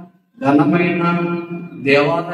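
A man preaching into a microphone in a drawn-out, chant-like delivery with long held vowels. It starts after a short pause at the beginning.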